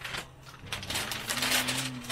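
Old paper photographs and postcards being handled and shuffled in a stack, with soft paper rustling and light taps.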